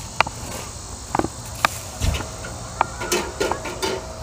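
Scattered light clicks and knocks, about eight spread unevenly over a few seconds, from a blacksmith handling a freshly forged nail in tongs and moving about the forge. A faint steady insect buzz runs underneath.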